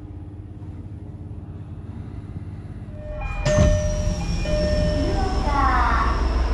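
Quiet, steady low rumble inside a moving train. About three seconds in, the sound cuts to a much louder railway platform: a train's engine running with a few short, steady electronic tones. Near the end comes a rising whine as a train pulls away.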